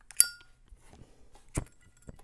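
A single sharp clink with a brief high ring, from a small metal object such as a pipe tool knocking against the pipe while it is handled, then a duller click about a second and a half later.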